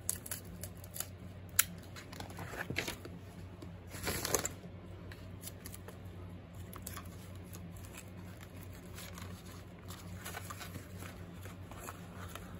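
Hands handling paper and tape: soft rustles and small ticks, with one short rip about four seconds in, as of a strip of tape being torn off, over a faint steady low hum.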